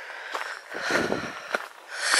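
Footsteps of a walker on a gravel path: a few separate steps with a softer scuff about a second in.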